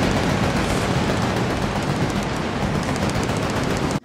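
Arena pyrotechnics firing: a dense, rapid stream of crackles and bangs over a wash of noise, cutting off suddenly at the end.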